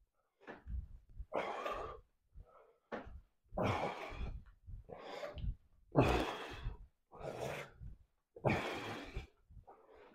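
A man breathing hard in rhythm with seated rows on resistance bands, a short, noisy breath with each pull, roughly every second and a half.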